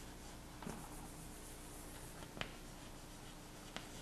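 Chalk writing on a blackboard: faint scratching of the chalk, with three short sharp taps as it strikes the board, over a steady low hum.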